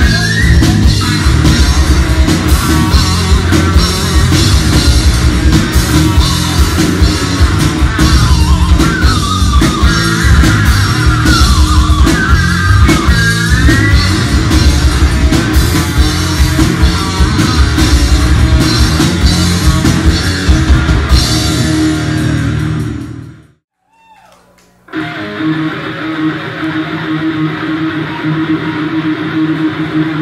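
Live heavy metal band playing loudly: distorted electric guitar with bent, gliding notes, bass and a pounding drum kit. The band sound fades out about three-quarters of the way through, leaving a second of near silence, and a quieter, steadier sound with held tones follows.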